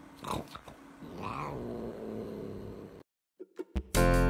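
Long-haired cat growling low, with a brief rising moan about a second in: a cat's warning sound of displeasure. The sound cuts off suddenly after about three seconds.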